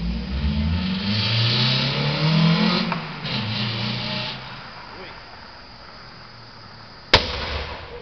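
Raised, wordless voices for the first four seconds or so, then a single sharp bang about seven seconds in: a pop from the burning car.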